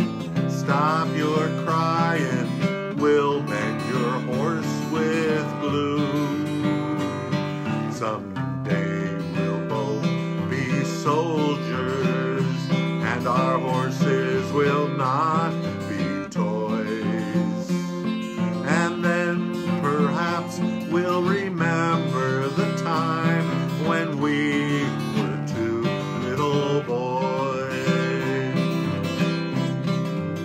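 Steel-string acoustic guitar strummed steadily, with a man singing along.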